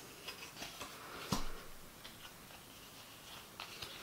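Faint light clicks and taps of a small stack of Yo-kai Watch Carddass trading cards being handled and sorted, with one sharper tap just over a second in.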